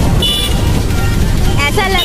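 Low rumble of road and wind noise from a moving vehicle, with a brief high-pitched horn toot about a quarter second in. A singing voice comes back in near the end.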